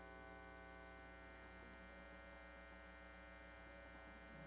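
Faint steady mains hum and buzz from an electric guitar's amplifier and overdrive pedal rig, left on with the strings silent.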